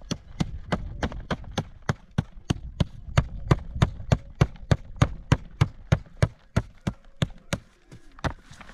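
A hand slapping a goat carcass in a steady rhythm, about three sharp smacks a second, as its hide is beaten loose for skinning.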